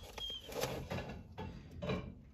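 Handling noise as a piece of jewelry is picked up: a few short rustles and clicks, with one brief high metallic clink near the start.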